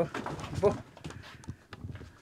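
A woman's brief spoken fragment, then a few light knocks at a low level, the kind made by someone moving about a small room.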